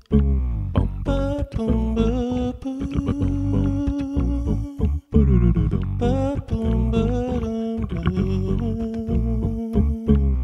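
Layered vocal loops played back on a Boss RC-505 loop station: a funky groove of beatboxed percussion with hummed bass and sung melody lines. The loop repeats about every five seconds, and each pass opens with a falling vocal sweep.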